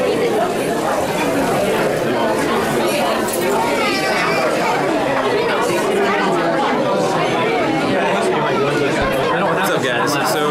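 Steady chatter of many diners talking at once in a busy cafe, with overlapping voices and no single voice standing out.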